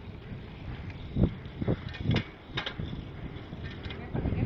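Bicycle being ridden in a wheelie: a few dull knocks and rattles from the bike over a low rumble.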